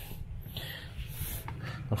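Faint close handling noise: soft rustling as a hand touches a paper carrier bag on the carpet, with a person breathing near the microphone.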